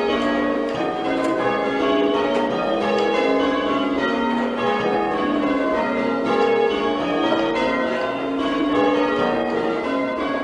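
A ring of six church bells being rung in changes, the bells striking one after another in a steady, continuous rhythm, each stroke ringing on under the next.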